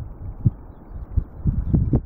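Distant rumble of a Boeing 787's jet engines at takeoff power as it lifts off, broken by irregular low thumps that are strongest near the end.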